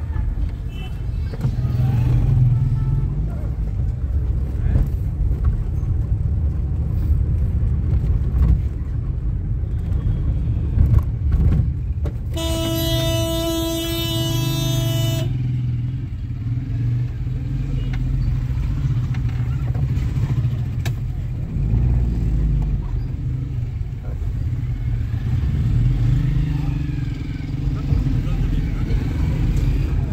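Busy street traffic heard from inside a slowly moving car: a steady low rumble of engines and road noise. Near the middle a vehicle horn sounds one long, steady blast of about three seconds.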